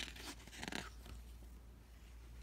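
A picture book's paper page being turned and smoothed flat by hand, a soft rustle mostly in the first second.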